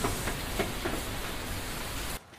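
Steady hiss of falling water like rain, with a few faint ticks.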